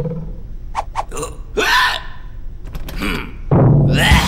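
Cartoon sound effects: a few short clicks and brief wordless vocal noises from a cartoon character, one of them falling in pitch, in a break in the music. The music starts again loudly near the end.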